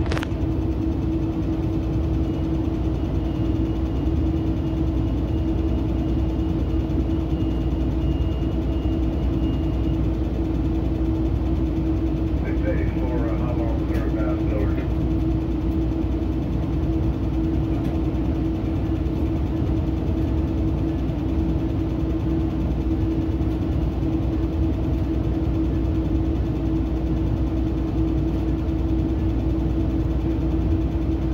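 Steady drone inside a Metrolink commuter train coach: a constant low hum with a deep rumble under it, holding an even level. A brief muffled voice is heard about thirteen seconds in.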